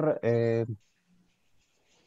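A man speaking briefly over a video-call line, then near silence.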